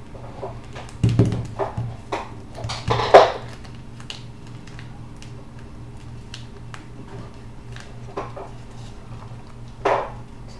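A sheet of paper being folded and creased by hand on a tabletop: scattered rustles and taps, loudest about a second in and again about three seconds in, over a steady low hum.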